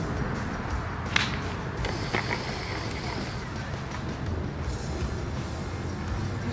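A golf club striking the ball once, a single sharp crack about a second in, over background music.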